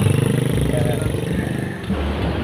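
Small motorcycle engine of a becak motor (motorcycle-powered pedicab) pulling away and running steadily, growing a little quieter toward the end.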